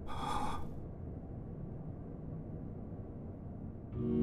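A man's short, sharp gasp in the first second, over a steady low rumble of background ambience.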